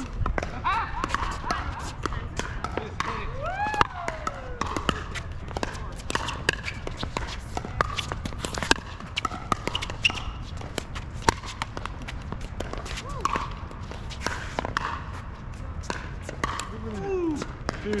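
Pickleball rally: sharp pops of paddles striking a hollow plastic ball, ball bounces on the hard court and shoes scuffing, in an irregular series of single clicks.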